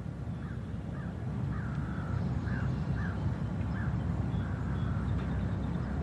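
A bird calling in a string of short calls, about two a second, faint over a steady low rumble.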